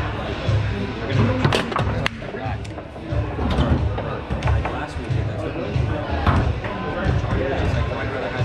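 Foosball being played: sharp knocks of the hard ball struck by the rod figures and hitting the table, the clearest two about a second and a half and two seconds in. Under them runs background music with a steady bass beat.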